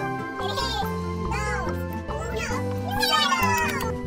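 Upbeat background music with a steady bass line, with high squeals rising and falling over it and a long falling squeal about three seconds in.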